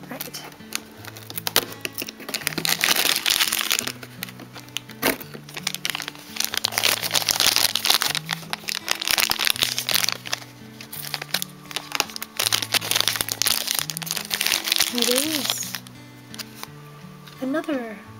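A shiny plastic wrapper crinkling loudly as a small figure is unwrapped by hand, with a few sharp snaps, over background music.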